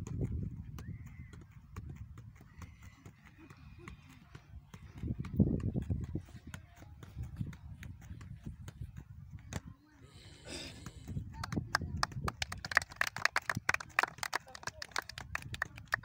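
A football being juggled on a foot, a run of short knocks as it is kicked up again and again, under the chatter of watching children. The knocks come thicker and sharper near the end.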